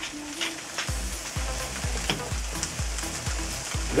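Chopped beef brains and onion sizzling in a frying pan as a wooden spoon stirs and scrapes through them. From about a second in, a steady bass beat of background music runs underneath, a little over two beats a second.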